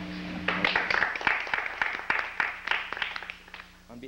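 Small audience applauding, starting about half a second in and dying away near the end.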